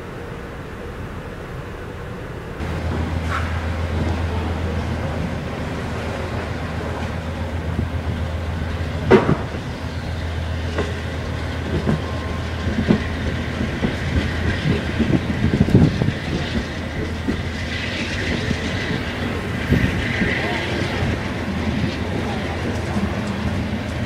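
Amtrak Downeaster passenger train rolling past a station platform, Amfleet coach then cab car going by. Its steady low drone rises sharply about two and a half seconds in, with wheel clicks and knocks over the rail joints, busiest in the middle.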